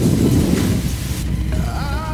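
Low rumble of air buffeting the microphone in roughly the first second, then a steady low hum under soft background music.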